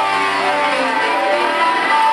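Live rock band playing through a PA: an electric guitar holding long sustained, distorted notes over bass guitar and drums.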